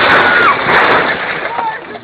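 Loud crash and clatter of a person falling from a brick wall onto metal cages, knocking them over with bricks tumbling down, fading over about a second and a half. A high, held cry runs through the crash and drops away about half a second in.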